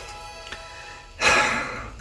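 Faint tail of guitar music, then a man's loud sigh, a breathy out-breath starting a little past a second in.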